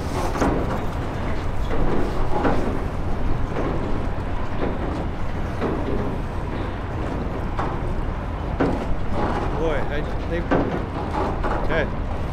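A steady low rumble with wind buffeting the microphone, and some muffled, indistinct voice sounds.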